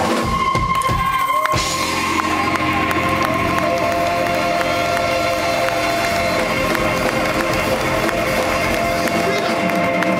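Live band music from a rock and soul band with keyboard and drums, loud and continuous, with a crowd cheering over it.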